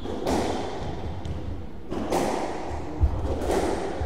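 Squash ball struck hard by rackets and slamming off the court walls, a few sharp hits echoing around the court, the sharpest about three seconds in.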